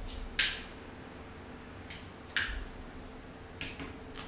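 Three short, sharp clicks or scrapes, about a second or two apart, from someone handling something away from the microphone, over faint room tone with a low steady hum.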